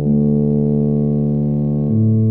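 Software (MuseScore) playback of a two-part solo tuba score in a synthesized tuba sound: two low brass notes held together, the written multiphonic pair. A new upper note sets in right at the start over a sustained lower note, and near the end the lower voice steps down to a new note.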